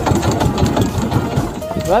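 Engine of a small motorized outrigger boat (bangka) running with a steady, rapid beat.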